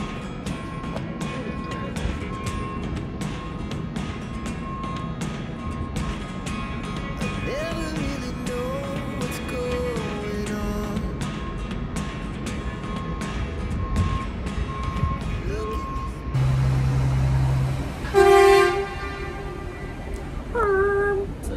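Background music with a steady beat and a singing voice. Near the end a ship's horn sounds: a deep, steady blast of about a second and a half, then a shorter, higher and louder blast.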